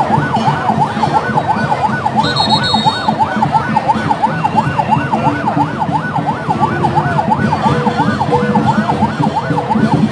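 Electronic siren in a fast yelp, its pitch sweeping up and down about four times a second, over the noise of a large crowd.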